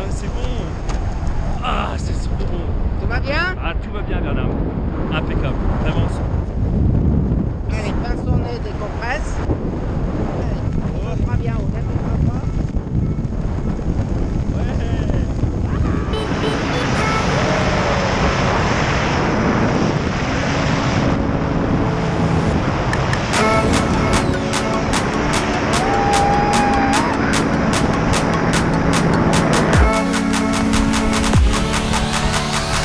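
Wind rumbling over a camera microphone during a tandem parachute descent, with voices calling out. About halfway through, electronic music comes in, with a steady pulsing beat over the last third.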